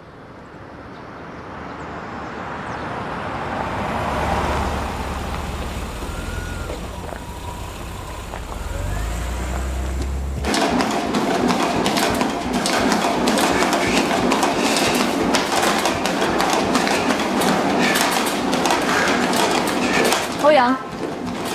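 A low rumble that swells over the first half, then, from about halfway, a treadmill running with a dense patter of footfalls on the belt.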